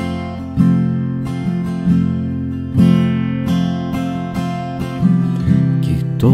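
Acoustic guitar playing a song's accompaniment, strumming chords that are left to ring, with a new chord struck roughly every second.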